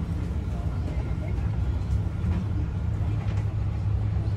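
Airport shuttle bus running, heard from inside the passenger cabin: a steady low hum with road noise.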